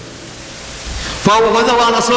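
Steady hiss of the recording with a faint low rumble, then a little over a second in a man's voice comes in loudly and holds one long, drawn-out vowel on a steady pitch.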